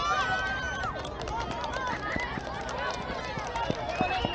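Children's high voices shouting and calling over one another, with quick footsteps of running on grass.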